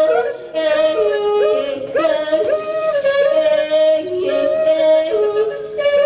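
Several voices singing together in a yodelling style, one holding a steady note while others leap sharply between high and low pitches.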